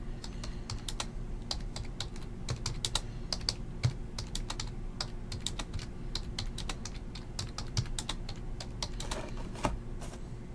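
Typing on a computer keyboard: irregular clicking of keys, several a second, over a low steady hum.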